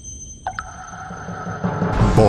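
Synthesized intro sting: steady high electronic tones over a low rumble that swells in loudness, with one tone dropping sharply in pitch about half a second in.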